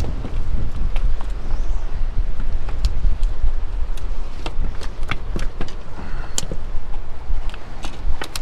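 Strong wind buffeting the microphone, a loud steady low rumble, with a few scattered sharp clicks and taps.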